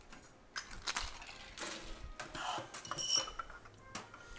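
Metal bar tools (cocktail shaker, strainers) clinking and knocking against each other and the bar, with short scraping sounds and a brief metallic ring about three seconds in.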